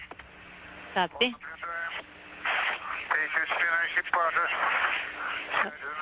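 Radio voice transmission: a man speaking in short phrases over a noisy communication channel, with a steady hum underneath.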